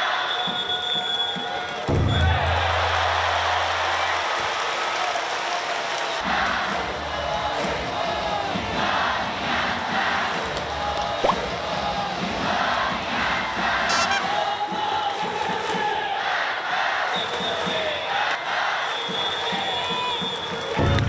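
Baseball stadium crowd chanting and cheering in a steady organised rhythm. About two seconds in, a deep booming tone lasts for about two seconds, and a single sharp crack near the middle is the loudest sound.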